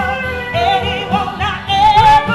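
A woman singing live into a microphone with wavering, vibrato-laden held notes, accompanied by saxophone over a steady beat.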